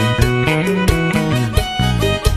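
Instrumental band music: guitar and violin over a strong bass line and a steady beat.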